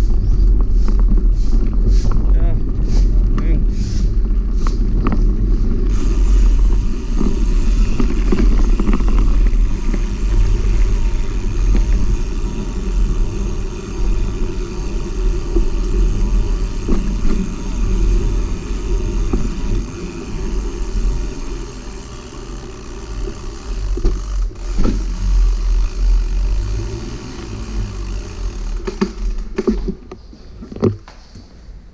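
Motorcycle running at low riding speed, its engine sound half buried under heavy wind rumble on the camera's microphone. It quietens in the last third as the bike slows.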